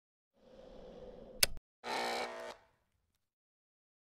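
Intro sound effects: a faint hum that builds for about a second and is cut off right after a sharp click, then a short, louder electronic stab that dies away about two and a half seconds in.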